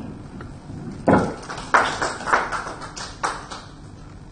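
Brief, sparse applause from a small audience: a handful of separate hand claps starting about a second in and dying out after a couple of seconds.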